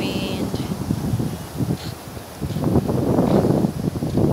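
Wind gusting on the microphone over small waves washing onto a sandy beach, the buffeting swelling in the last second and a half.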